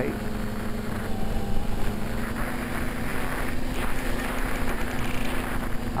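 Twin electric motors and propellers of a TwinStar RC plane running steadily in flight, a constant hum that holds one pitch over a rush of noise.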